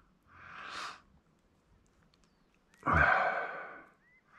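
A man's breathing: a short breath drawn in, then a longer, louder sigh out about three seconds in.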